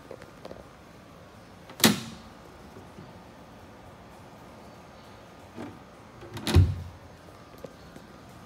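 Two sharp knocks about five seconds apart, the second heavier and deeper, with a smaller knock just before it: a wooden deck hatch lid on a fibreglass boat being opened and then let down shut over its storage well.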